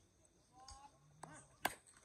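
A cricket bat striking the ball: one sharp crack about one and a half seconds in, with faint shouts from players just before it.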